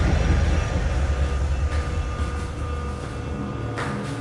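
Horror-score sound design: a deep, rumbling low drone left over from booming hits, slowly fading, with a faint held tone above it.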